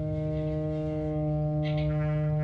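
Improvised experimental music: a steady low drone with a stack of steady overtones above it, unchanging in pitch. A brief hiss rises over it near the end.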